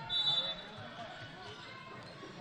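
Quiet gymnasium ambience during a basketball game: faint crowd chatter in the stands, with a brief high-pitched tone in the first half second.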